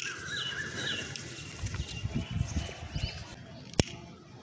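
Birds calling in short wavering calls over a steady hiss, with a few dull low thumps in the middle and a single sharp click near the end.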